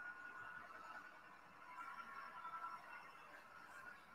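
Very faint sound of a 2019 Chevy Colorado ZR2 Bison's 2.8-liter Duramax turbodiesel pulling up a rocky off-road hill, played back from a video and barely above silence, swelling a little in the middle.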